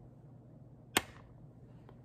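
A single sharp click about a second in and a fainter click near the end, over the low steady hum of a ceiling fan.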